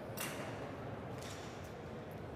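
Low, steady room noise of a large indoor hall, with one faint click shortly after the start.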